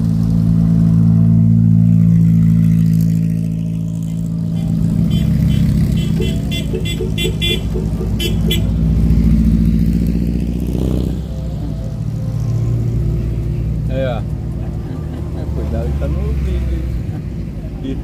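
A convoy of dune buggies driving past one after another, their engines swelling and fading as each one goes by. About halfway through comes a quick run of short horn beeps.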